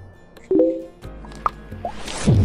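Short plop and blip sound effects of an animated logo intro: a brief pitched blip, then a low hum that comes in halfway, with two quick rising blips near the end.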